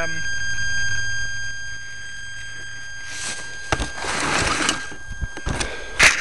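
Rustling and several sharp knocks as the foam RC plane carrying the keycam is picked up out of the grass, starting about halfway through, over a steady high whine.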